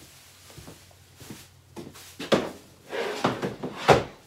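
Rustling of a plastic shopping bag and handling noises, with a sharp knock near the end as an item is set on a pantry shelf.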